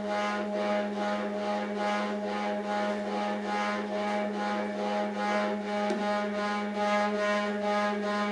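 Electronic soundtrack: a steady low drone under a chord of held tones, with a rhythmic pulse about three times a second. The higher tones grow stronger in the second half.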